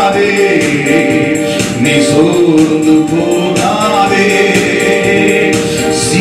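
A man singing a Christian worship song through a microphone, over a steady percussion beat.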